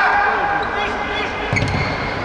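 Futsal ball kicked on an indoor hall floor, with one sharp strike about one and a half seconds in, amid players' shouts.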